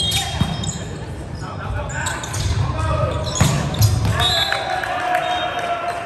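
Volleyball rally on an indoor hardwood court: the ball struck and hitting the floor in sharp knocks, about half a second in and twice more around three and a half seconds. Players shout, echoing in the gym hall.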